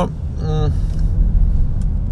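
Steady low rumble of a car's engine and tyres heard from inside the cabin while driving along a city street.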